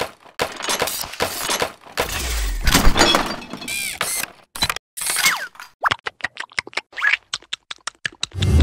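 Cartoon sound effects: a busy run of clattering knocks and crashes with a few short sliding squeaks, the knocks turning into a quick patter of clicks in the last couple of seconds.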